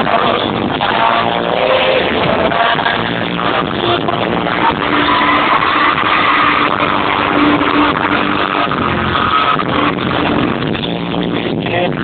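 Live amplified pop band playing in a large arena, loud and steady, heard through a poor-quality recording that sounds muffled, with everything above the mid treble missing.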